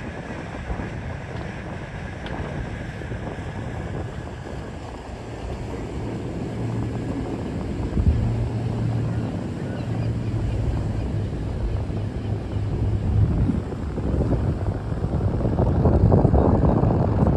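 Outdoor ambience dominated by wind on the microphone, with a steady low hum from about five seconds in until near the end, when the overall noise grows louder.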